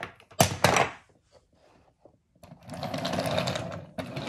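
Wooden toy pieces clatter loudly twice about half a second in, then, from about two and a half seconds in, a wooden toy train engine rattles steadily as it is pushed by hand along wooden track.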